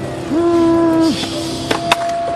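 A person's voice calling out one long held note, sliding up into it and dropping off at the end. Two sharp clicks follow near the end.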